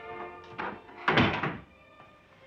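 A wooden door shutting with a heavy thud a little past a second in, after a lighter knock just before, over background music with sustained tones.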